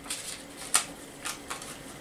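Paper being handled by hand: light rustling with a few short sharp clicks, the loudest a little under a second in.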